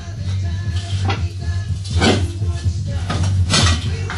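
A few sharp metal clanks and scrapes of hand tools against a steel wheel rim as a tire bead is worked onto the rim by hand, with music playing underneath.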